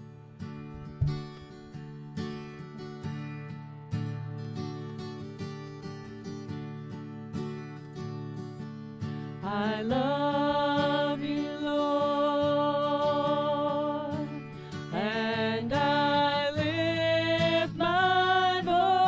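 Acoustic guitar strumming chords of a worship song, alone at first; about halfway through a woman's voice comes in singing over it, holding long notes, and the music grows louder.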